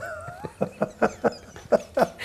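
Laughter: a short high-pitched squeal of a laugh, then a quick run of breathy laugh pulses.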